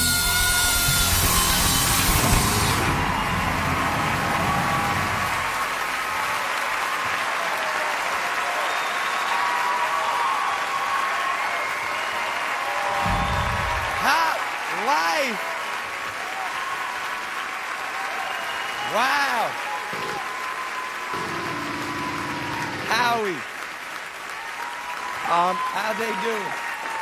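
A live band's song ends loudly about two and a half seconds in, and a studio audience goes on cheering and applauding, with several loud whoops rising above the crowd.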